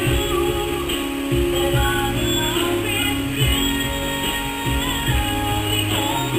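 Music with guitar and a steady beat.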